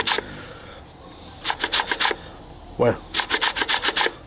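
Orange rind being grated on a metal box grater in quick rasping strokes. The strokes come in three short runs, broken by a pause of about a second.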